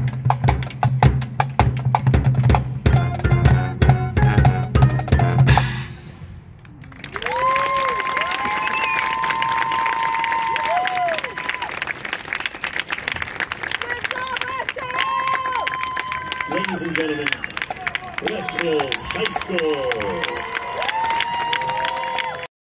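A marching band's drums and horns play a loud, strongly beating final passage that cuts off about six seconds in. Then the audience applauds and cheers, with long "woo" calls over the clapping.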